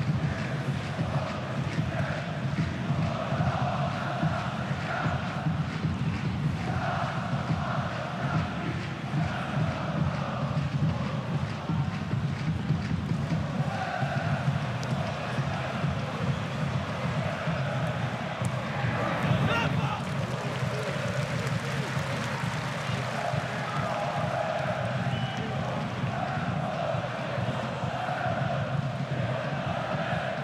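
Football stadium crowd chanting in repeated sung phrases over a steady crowd hum.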